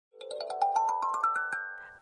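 Short intro jingle: a quick rising run of about a dozen bell-like notes, each left ringing, fading out near the end.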